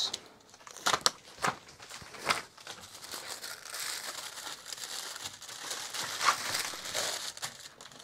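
Blue paper surgical drape crinkling as it is unwrapped and unfolded. A few sharp crackles come in the first couple of seconds, then a steadier rustle from about halfway.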